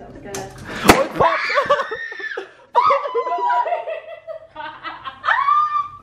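A champagne cork pops once, sharply, about a second in, followed by women laughing and squealing.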